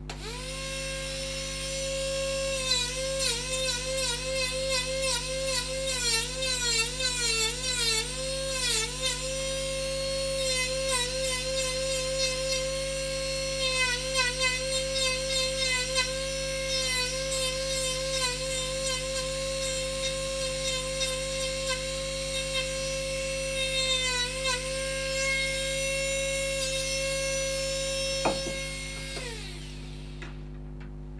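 Handheld electric rotary carving tool running with a high whine, its pitch dipping again and again as the burr is pressed into the wood of a carved dog's head. It spins up at the start and winds down, falling in pitch, near the end.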